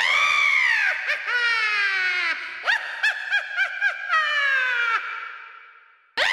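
High-pitched cackling witch's laugh. A long cry rises and then falls, followed by a run of falling "ha"s and a quick string of short cackles. It ends with a long laugh sliding down in pitch and fading away.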